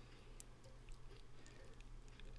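Near silence: a faint steady low hum, with one faint click about half a second in.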